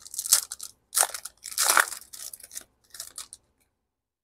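Foil trading-card pack wrapper being torn open and crinkled by hand, in a few short crackling rips.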